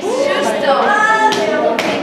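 Audience clapping in a hall, with a few sharp claps standing out, over a girl's voice speaking.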